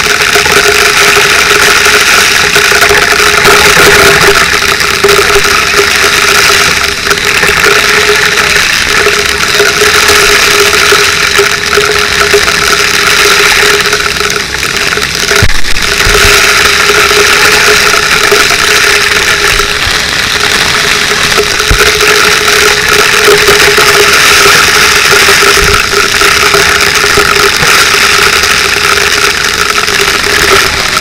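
Fire hose nozzle spraying a high-pressure water stream: a loud, steady rushing hiss with a steady hum underneath, and a few brief low knocks from handling.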